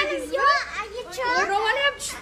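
A young girl crying loudly, a run of high-pitched wails whose pitch wavers up and down.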